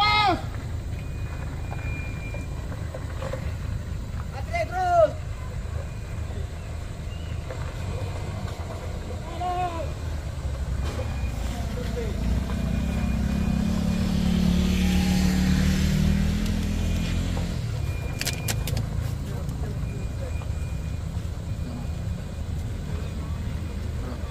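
Low, steady rumble of vehicle engines working on a rough dirt road. In the middle a motorbike passes close by, its engine swelling and then fading over a few seconds. Short shouted calls from people come near the start and twice more in the first half.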